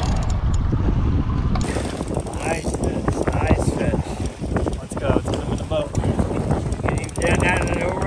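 Wind rumbling on the microphone and waves washing against a small boat, with a spinning reel being cranked as a mahi mahi is reeled in.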